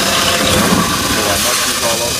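Power drill spinning a hole saw through a half-inch drywall ceiling, cutting a hole for a recessed pot light. It runs steadily and loudly, with a voice briefly over it.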